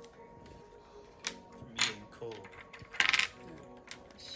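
Small board-game pieces and wooden raft sticks handled on a table: a couple of sharp clicks, then a quick clatter about three seconds in.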